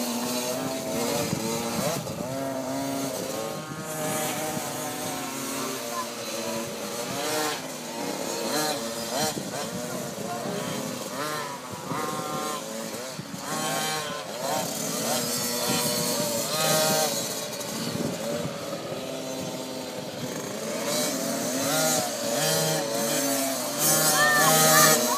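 Small dirt bike engines revving as they ride a motocross track, the pitch rising and falling over and over, with more than one bike running at once.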